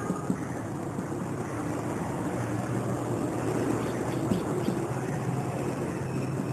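Steady low background drone, with a few faint scratches of a marker pen writing on a whiteboard.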